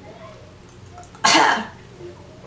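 A woman coughs once, short and sharp, a little over a second in. The cough comes as chili powder from the spicy lollipop she has just cracked open hits her throat.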